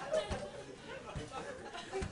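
Indistinct chatter of several voices in a room, with no music playing and a couple of soft low thumps.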